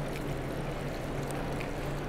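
Steady rush of water running in a demonstration fish tank, with a low steady hum beneath it.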